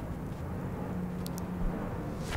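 Steady low background rumble and hum, with two faint ticks about a second in.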